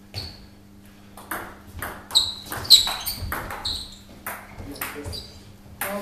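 Table tennis ball being hit back and forth in a doubles rally: a run of about ten sharp, ringing clicks of ball on paddle and table, two or so a second.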